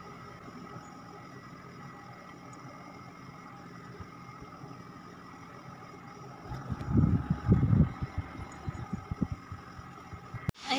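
Steady low background hum with faint high whines. From about six and a half seconds in comes a run of muffled thumps and rustles, the loudest sound here, as clothes are handled on the bed close to the microphone.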